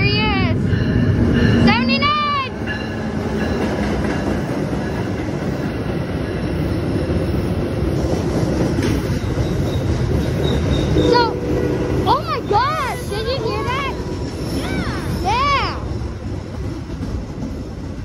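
Metra commuter train of stainless bilevel coaches rolling past along the platform, a loud continuous rumble. High-pitched wavering squeals rise over it briefly near the start and several times toward the end.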